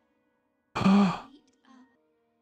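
One short breathy sigh a little past halfway, with faint traces of voice before and after it.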